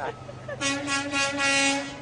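A vehicle horn honking one long steady blast, starting about half a second in and lasting about a second and a half.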